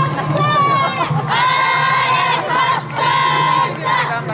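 A group of children shouting a chant together while they dance, a string of high-pitched held calls, each lasting roughly half a second to a second, with short breaks between them. A steady low hum runs underneath.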